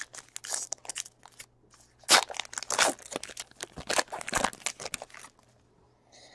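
Trading card pack wrapper being torn open and crinkled by hand: a run of sharp crackles and rustles, loudest about two seconds in and again around four seconds.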